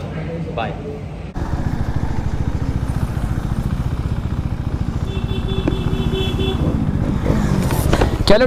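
KTM Duke 390's single-cylinder engine running steadily under way, its firing pulses close and even. It starts abruptly about a second in.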